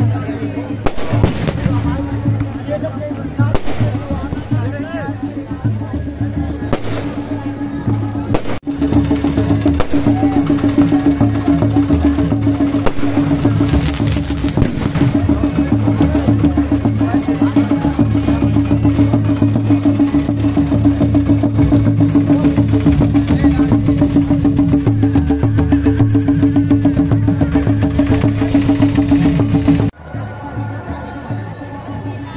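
Festival procession drumming with a steady held tone above it, amid a crowd's voices; the sound breaks off abruptly a little under nine seconds in and resumes fuller.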